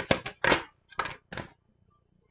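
Tarot cards being handled and shuffled by hand: a handful of short, sharp card clicks and slaps in the first second and a half.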